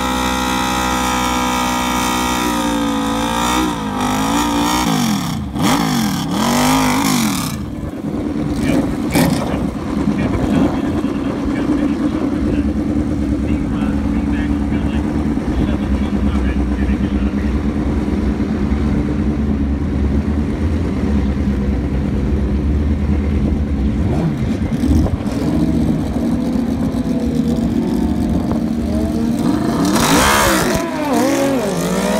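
Yamaha VMAX drag bike's V4 engine held at high revs through a burnout for the first few seconds, then the revs drop with a few blips and it settles into a steady low rumble while staging at the line. The revs climb sharply at the very end as it launches.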